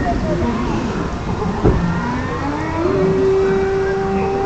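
Ride soundtrack from loudspeakers: long held tones, one gliding upward into a sustained note in the second half, over a steady low rumble, with a single sharp knock a little before the middle.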